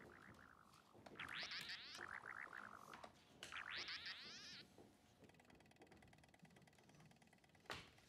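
Faint electronic warbling from an old desktop computer running a chess program: two bursts of quickly repeating chirps with rising sweeps, then a fainter buzzing tone, and a sharp click near the end.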